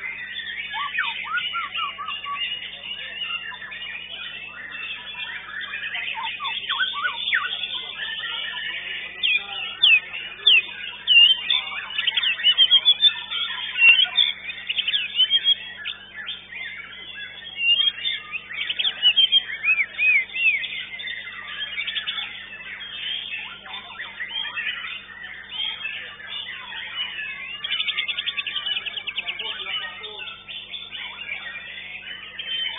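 White-rumped shamas (murai batu) and other contest birds singing together: a dense stream of fast whistles, chirps and trills, loudest in bursts through the middle.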